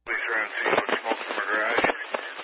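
Public-safety scanner radio transmission: a voice comes in abruptly over the narrow, tinny radio channel, too distorted for the words to be made out.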